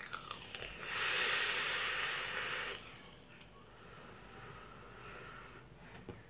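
A person vaping an e-cigarette: a breathy draw through the device, loudest for about two seconds starting about a second in, then a softer, longer breath out of vapour.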